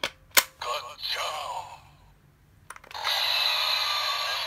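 Button clicks on a DX Gashacon Bugvisor II toy, each followed by sound from its small electronic speaker: first a short recorded voice line, then from about three seconds in a sustained electronic sound effect.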